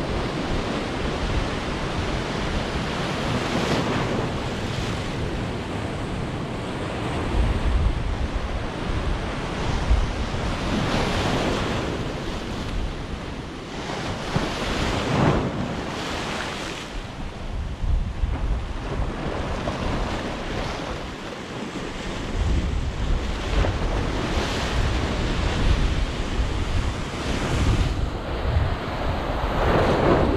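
Surf breaking and washing against a concrete seawall and its boulders, swelling and easing every few seconds. Wind buffets the microphone with a low rumble, heaviest in the second half.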